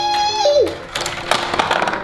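The tail of a child's drawn-out 'whee', gliding down in pitch. It is followed by a rapid plastic rattling and clicking for about a second and a half as the toy's orange plastic gondola runs down its zipline to the bottom of the playset.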